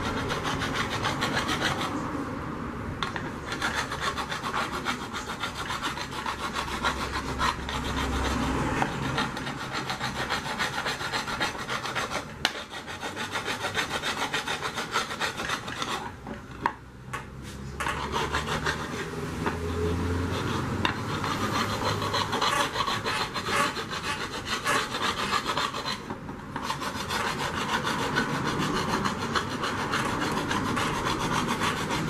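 A metal hand tool scraping rapidly back and forth along the rim of an aluminium pressure cooker, a continuous rasping that breaks off briefly about 2, 16 and 26 seconds in.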